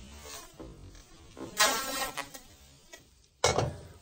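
Stainless steel skillet shaken on a camp stove's metal grate: a short buzzing metal scrape about one and a half seconds in and a sharp clank near the end.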